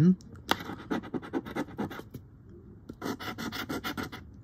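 Coin scratching the coating off a lottery scratch-off ticket in quick short strokes. It pauses for under a second just past halfway, then resumes in a denser run.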